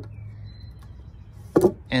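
A wooden 4x4 post being turned over by hand on a concrete slab, with one short wooden knock about one and a half seconds in, over a low steady hum.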